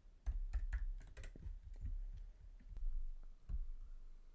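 Computer keyboard and mouse clicking: a string of irregular key presses and clicks as numbers are typed into a size box.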